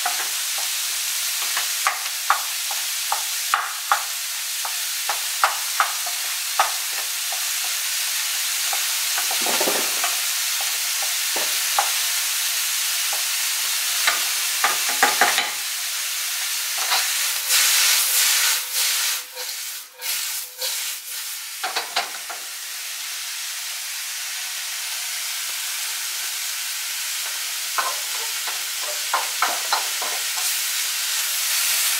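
Steady sizzle of food frying in hot oil, with a wooden spoon clacking and scraping against the pans as ground beef is broken up and zucchini noodles are stirred. The sizzle grows louder and choppier for a few seconds past the middle.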